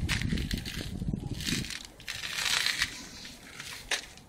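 Crunching footsteps on frozen, icy ground at the edge of an iced-over pond, in two bouts about a second and a half and two and a half seconds in. A low rumble on the microphone runs through the first second and a half, and there is a sharp click near the end.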